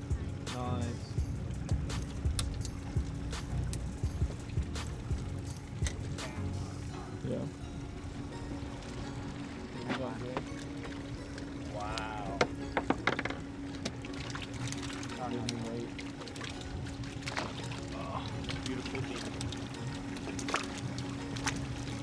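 A steady low hum with water pouring, scattered small clicks and brief faint voices now and then.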